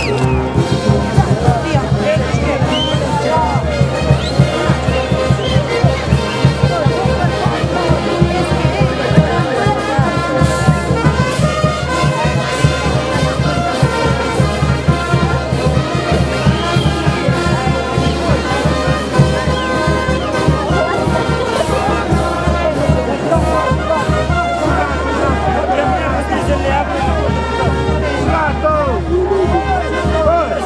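A live brass band playing with a steady drumbeat, its large bass horn among the brass.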